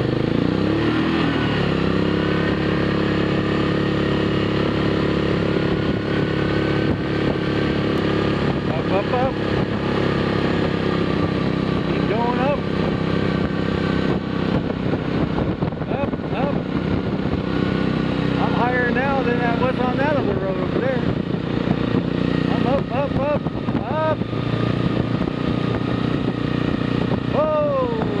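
ATV engine running at a steady cruising pitch while the quad rides along a gravel road, with a few short exclamations from the rider.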